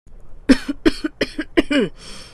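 A woman coughing four times in quick succession, about three coughs a second, acted as the cough of someone sick with a cold. The coughing ends in a falling "hmm".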